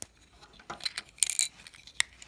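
Small plastic Lego pieces clicking and clattering as fingers handle a Lego container, with a few light clicks and a brief rattle past the middle.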